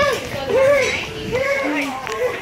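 A child's high voice making a run of drawn-out, sing-song syllables with no clear words, about one every half second, the last one dropping lower in pitch.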